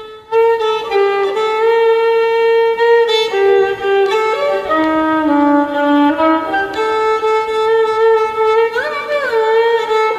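Solo violin playing a slow melody in Neelamani raga: long bowed notes held steady, stepping down to lower notes in the middle and back up, with a sliding ornament near the end.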